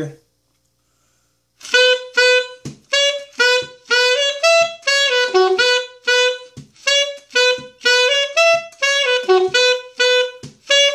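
Alto saxophone playing a melody line in short, detached notes. The notes start about a second and a half in, after a brief silence, and stay mostly on one pitch with quick steps up and down.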